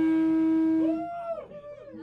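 Electric guitar note left ringing through the amplifier after the band stops, held steady for about a second and then cut off. A brief rising-and-falling tone follows, then a much quieter gap.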